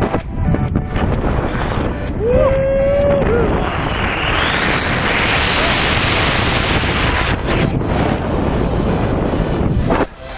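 Heavy wind buffeting the camera's microphone during a tandem skydive's freefall and parachute opening, a steady roar that turns brighter and hissier for a few seconds in the middle. A short held tone rings out about two seconds in.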